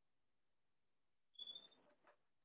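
Near silence: room tone, with one faint short sound about one and a half seconds in.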